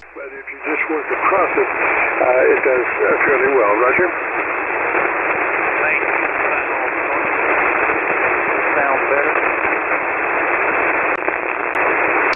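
A weak single-sideband voice signal from an Icom IC-7300 heard on a ham receiver on the 40-metre band: a steady hiss held to a narrow voice band, with faint, unintelligible speech showing through it now and then, mostly in the first few seconds. The signal has faded down to the receiving station's noise level.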